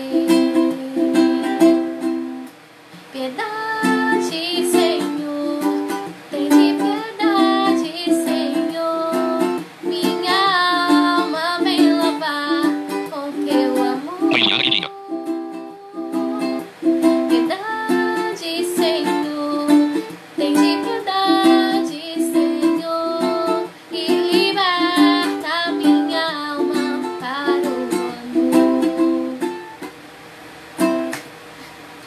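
A woman singing while strumming chords on a ukulele in a steady rhythm.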